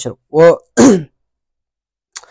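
A man clearing his throat twice in quick succession, two short falling sounds within the first second.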